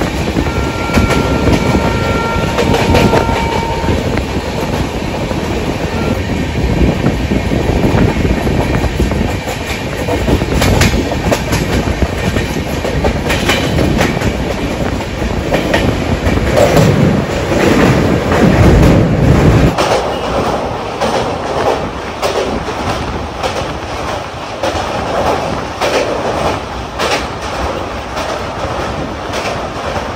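Indian Railways passenger train running at speed, heard from an open coach door: the wheels clatter over rail joints in a steady rush. A thin high whine sounds for the first three seconds. The run grows louder and deeper while the train crosses a steel truss bridge in the middle, then eases off.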